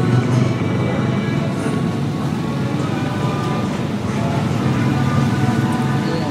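Background music playing over the café's sound system, with steady held notes and no talking over it.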